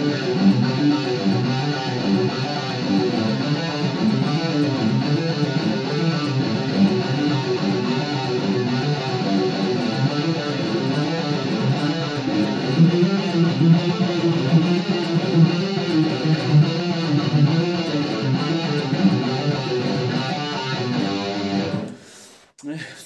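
Electric guitar through distortion playing a fast, repeating rock lick in low notes, stopping abruptly near the end.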